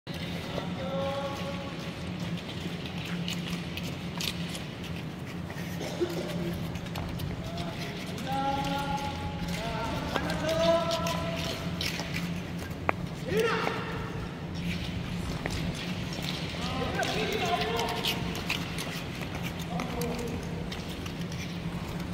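Short-track speed skate blades scraping and clicking on the ice as a line of skaters strokes around the rink, over a steady low hum. Echoing voices call out now and then in the hall.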